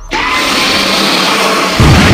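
Edited-in magic sound effect: a loud rushing whoosh that starts suddenly and holds steady, ending in a heavy low boom near the end, over music.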